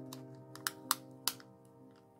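Soft background music holding a steady chord, with a few light, crisp clicks as a cardstock frame and a translucent butterfly film are handled and pulled apart.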